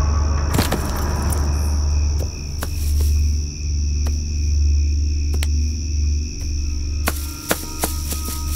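Suspense film score: a deep bass drone that swells and dips, over a steady high tone. Scattered sharp clicks and knocks cut through it, a cluster of them near the end.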